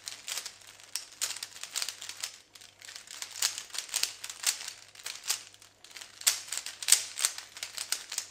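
A plastic 3x3 puzzle cube being turned fast by hand: a rapid, uneven run of dry plastic clicks and clacks as its layers snap round.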